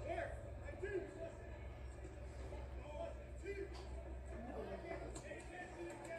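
Faint, indistinct voices over a steady low hum, played back through a television's speaker.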